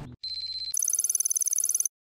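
Short electronic outro sound effect: a brief steady high tone, then a fast, high-pitched electronic trill like a phone ringing, which cuts off suddenly just before the end.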